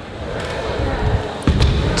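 BMX bike rolling off across a skatepark floor, tyres and frame rumbling, with a loud thump about one and a half seconds in.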